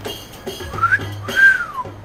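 A wolf whistle: a short rising whistle, then a longer one that arches and falls away, over soft background music.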